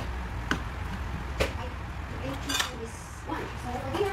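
Three sharp clinks of kitchenware, about a second apart, over a steady low hum, with faint voices in the background.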